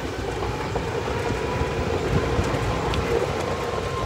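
Electric golf cart driving along: a steady rumble of tyres and body with a thin motor whine that rises slowly in pitch as the cart gains speed.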